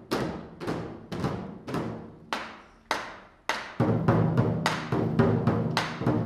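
Large barrel drums struck in a slow, even beat, about two strokes a second, each stroke ringing out. Shortly before four seconds in, the beat quickens and grows louder, with a fuller, lower sound underneath.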